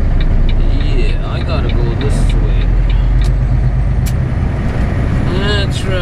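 Semi truck's diesel engine running steadily under way, heard from inside the cab as a continuous low rumble, with a few short clicks.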